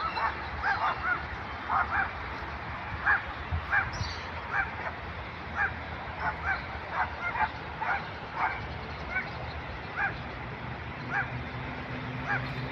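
A dog barking repeatedly, short single barks about one or two a second at an uneven pace.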